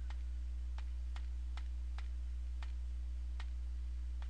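A steady low hum with faint, sharp ticks spaced unevenly, roughly two a second.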